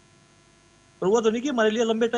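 A pause holding only a faint, steady electrical hum, then a man's speech resumes about a second in.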